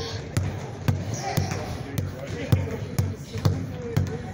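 A basketball being dribbled hard on a hard floor in a crossover drill, passed low between and around the legs: a string of sharp bounces, about two a second, some coming in quick pairs.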